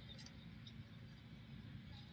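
Near silence: faint outdoor background with a steady low rumble and a couple of soft clicks near the start.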